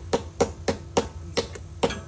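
Pliers tapping a battery terminal clamp down onto its post: a run of sharp metal-on-metal taps, about three a second.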